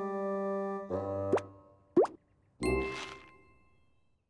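Cartoon music with held notes that stops about a second in. Two quick upward-sweeping plop sound effects follow, then a sudden crash with a ringing tone that fades away.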